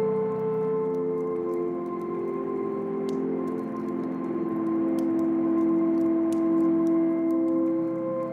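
Slow ambient music of long held notes that change only every few seconds, over the faint scattered crackles and pops of a log fire.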